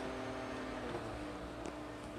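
Steady low hum of room background with a few faint small clicks from hands handling the sound card and its plugged-in cables.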